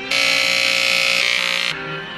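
Corded electric hair clippers buzzing loudly for about a second and a half, starting and cutting off suddenly, over background string music.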